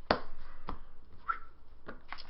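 Trading cards being handled and set down on a playmat: a few sharp taps, the loudest right at the start, another about two-thirds of a second in and one near the end.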